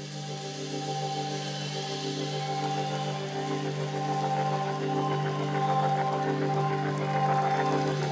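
Music: a sustained low drone under held higher chord tones, with a soft pulse in the middle, swelling gradually in loudness.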